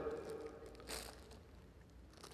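Faint, brief rustle of a wrapped umbrella being handled, about a second in, in an otherwise quiet hall.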